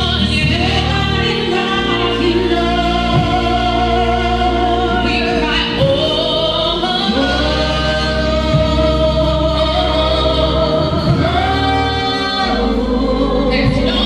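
Gospel choir singing live in long held notes over a steady keyboard and bass accompaniment.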